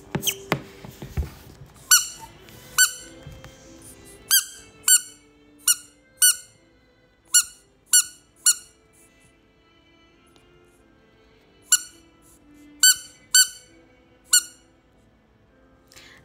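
A yellow rubber duck toy squeezed by hand, squeaking about a dozen times in short runs of two or three, with a pause of a few seconds in the middle.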